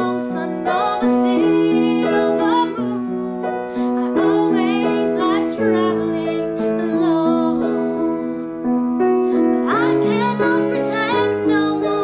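A woman singing to her own upright piano accompaniment: held piano chords under a sung melody that bends and wavers.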